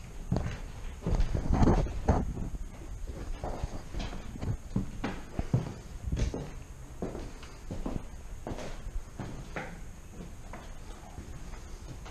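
Footsteps on bare wooden floorboards, irregular knocks and scuffs, heaviest about one to two seconds in.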